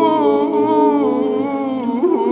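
Male a cappella group singing: the backing voices hold a steady chord while a male soloist sings a wavering, bending line over it.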